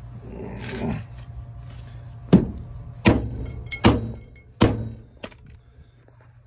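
Large dead blow hammer striking a steel trailer leaf spring and shackle, four hard blows about 0.8 s apart starting a little over two seconds in, then a lighter knock. The blows are meant to jar a misaligned spring into line with the shackle's bolt hole.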